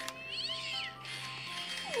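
A musical greeting card playing a tinny Christmas tune with a high-pitched recorded cat meow about half a second in, and a lower wavering animal cry starting near the end.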